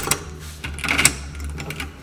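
A metal key being worked into a door lock cylinder and turned: a run of small metallic clicks and rattles, busiest about a second in.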